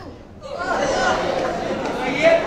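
Murmur of many voices in a large, echoing hall, building up about half a second in after a brief lull in the Qur'an recitation.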